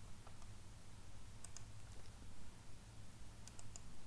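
Faint clicks of a computer mouse: one near the start, a pair about a second and a half in, and a quick run of three or four near the end.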